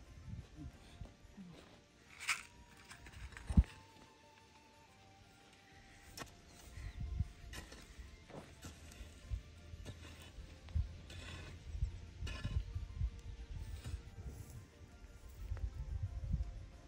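Quiet background music under a garden hoe chopping and scraping soil in a run of dull thuds. There is one sharp knock about three and a half seconds in.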